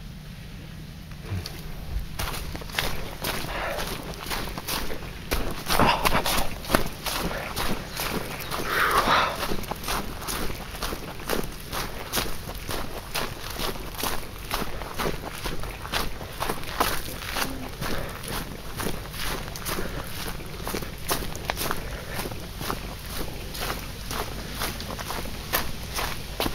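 Footsteps on a trail strewn with dry leaves, a steady walking rhythm of short crunches that starts about two seconds in.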